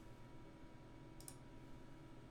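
Near silence: room tone with a faint steady hum, and a faint double click of a computer mouse a little past a second in.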